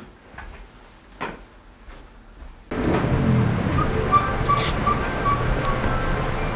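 Quiet room tone with faint movement and a short knock about a second in. Just under three seconds in it switches abruptly to a steady outdoor din of a busy street scene, with a faint repeating beep.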